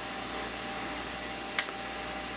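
Steady room hum with a faint constant tone, and a single short, sharp click about one and a half seconds in.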